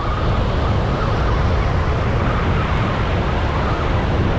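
Wind buffeting the microphone over surf washing in, with a faint wavering whine from a spinning reel being cranked fast to retrieve a hooked fish. The whine is clearest in the first couple of seconds.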